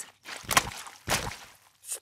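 Two short squelches of mud, a little over half a second apart: a cartoon sound effect of a body shifting and rising in a muddy puddle.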